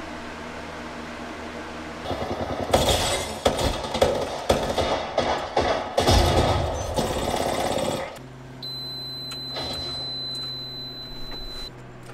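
Video game audio with rapid gunfire-like bangs from about two to eight seconds in, between stretches of steady electrical hum. A thin, high, steady whine sits over the hum for about three seconds near the end.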